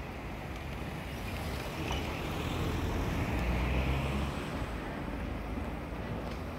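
Car engines running as street traffic moves across a level crossing once the barriers lift. The low rumble grows louder around the middle and then eases off.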